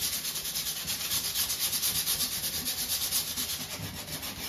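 Hand sanding with sandpaper: quick, even back-and-forth strokes rubbing through the dried lacquer and paint along the edge of a painted cabinet, distressing it to show the older ochre paint beneath.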